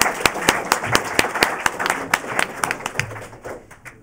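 Applause from a small audience and panel, many hand claps together, thinning out and dying away near the end.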